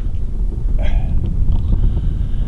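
Wind buffeting the microphone, a steady low rumble, with one brief short sound a little under a second in.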